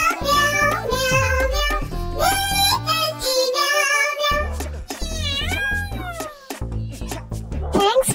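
Hindi children's nursery rhyme: a sung melody over a cheerful backing track. Around five seconds in, a few sliding, falling meow-like calls follow.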